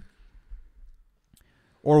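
A brief pause in a man's close-miked speech: near quiet with a faint low rumble, then a single faint click a little over a second in, before his voice returns near the end.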